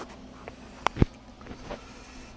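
A few short sharp clicks and knocks. The loudest are two close together about a second in, over a low steady hum.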